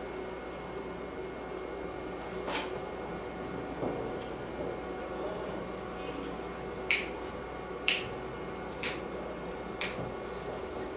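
Steady room hum, with a faint click about two and a half seconds in and then four sharp clicks about a second apart near the end.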